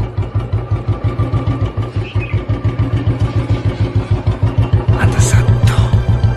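Royal Enfield single-cylinder motorcycle engine running on the road, a fast, even thumping beat. A short rushing noise rises and falls about five seconds in.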